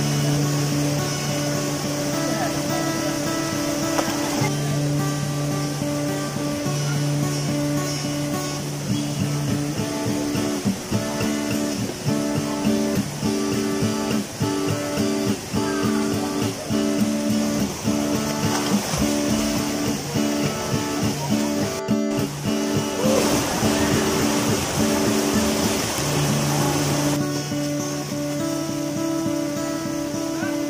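Background music led by guitar, with held notes and a steady rhythm that comes in about ten seconds in.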